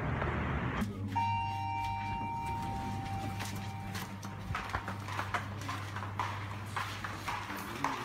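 A short electronic chime about a second in, ringing and fading over a couple of seconds, over a steady low hum, followed by scattered footsteps and light clicks on a hard floor.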